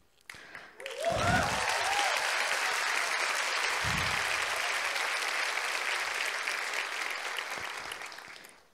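Audience applauding, with a few cheers as it starts, fading away near the end.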